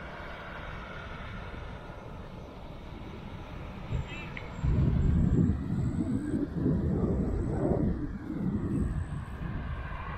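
Wind rushing over the microphone of a camera riding on a moving bicycle, buffeting harder from about five seconds in. A motor vehicle passes on the road.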